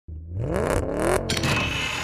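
Vehicle engine revving, its pitch climbing for about a second, then breaking off into a steadier, higher sound.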